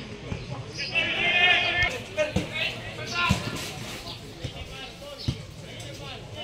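Football match heard from the touchline: a loud high shout about a second in, then more calls from players, with several short thuds of the ball being headed and kicked.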